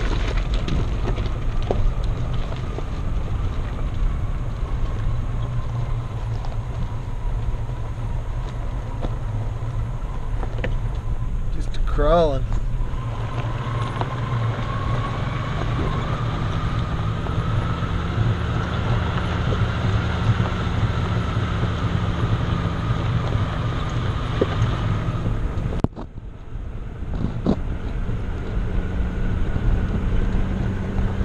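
Jeep Grand Cherokee ZJ driving slowly on a gravel mountain trail: a steady low engine and tyre rumble with wind on the microphone. A brief warbling sound comes about midway, and the sound drops away suddenly for a moment near the end.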